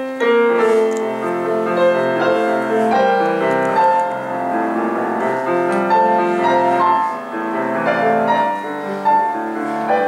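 Yamaha grand piano playing a solo interlude in a Korean art song, with the baritone silent between sung verses.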